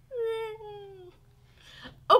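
A woman's high, drawn-out wordless squeal of delight: one held note of about a second that slides down in pitch.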